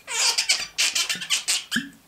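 A man coughing: a run of short, sharp coughs in quick succession, ending with a brief low voiced sound near the end.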